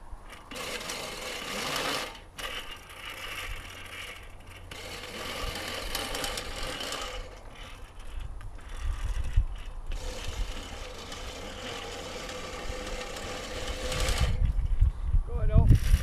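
Electric motor and propeller of an RC glider running as a steady high whine while the model is launched and climbs away. Low rumbles of wind on the microphone come in a little over halfway and again near the end.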